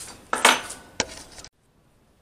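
Metal tools and offcuts clattering and scraping as a hand rummages through them on a workbench, with a sharp clink about a second in; the sound cuts off abruptly halfway through.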